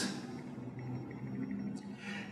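A quiet pause in speech: low room tone with a faint steady hum, and a short breath drawn near the end.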